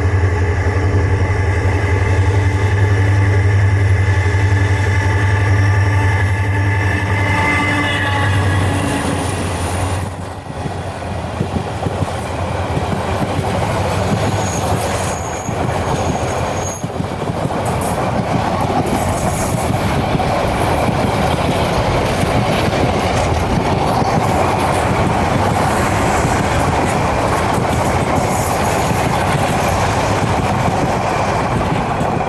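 A diesel-electric locomotive's engine runs loudly as it nears. Then the passenger coaches roll past with a steady rumble and rattle of wheels on the rails, and a brief high wheel squeal about halfway through.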